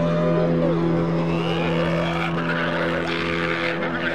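A sustained low musical drone with car sounds over it: an engine and tyres squealing in rising and falling glides that grow stronger about halfway through.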